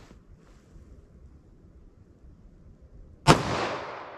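A single .45 ACP +P pistol shot (230-grain hollow point) about three seconds in, a sharp report followed by an echo that fades away.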